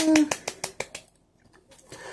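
Rapid hand clapping, about ten claps a second, fading out about a second in.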